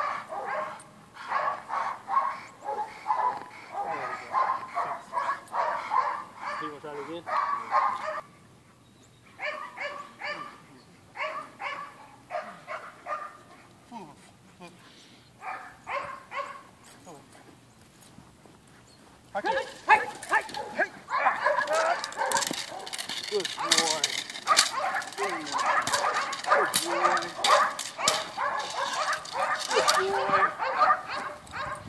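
A dog barking rapidly and repeatedly in agitation at a decoy, in fast runs broken by short lulls and loudest and densest over the last third.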